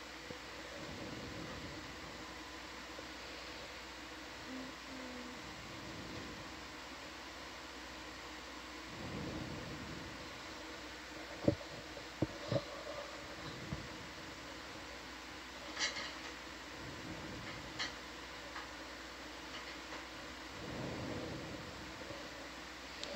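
Steady fan-like hum of equipment in a small control room, with a few sharp clicks about halfway through.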